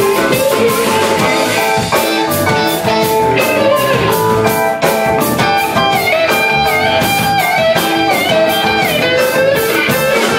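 Live rock band playing an instrumental stretch of a song: electric guitars carry the melody, with bends in the notes, over bass guitar and drums.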